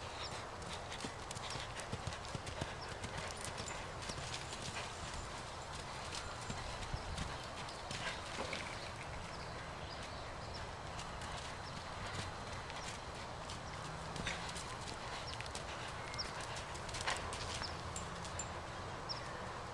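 Unshod hooves of a Thoroughbred mare cantering loose on sand footing: irregular dull hoofbeats with scattered sharper clicks over a steady background noise.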